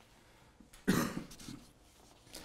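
A single cough about a second into a pause in the talk: one short burst that fades quickly.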